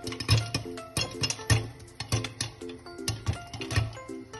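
Upbeat background music with a steady beat and short, repeating plucked notes. Under it, sharp irregular pops of popcorn kernels bursting in a covered frying pan.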